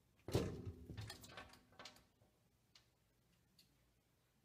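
A kitten jumping against a mirrored sliding closet door: a sharp knock about a third of a second in, then a quick run of softer rattling knocks over the next second and a half, and two faint ticks later.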